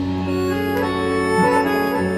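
Live band playing an instrumental passage between sung verses, led by long held notes from a reedy, accordion-like instrument over the band.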